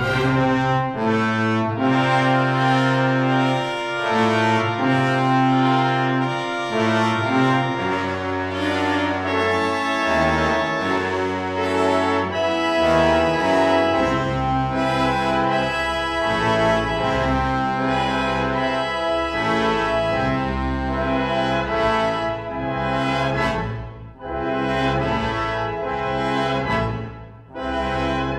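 Chamber orchestra playing, brass to the fore with trombones, trumpets and horns in held chords that change every second or two over low bass notes.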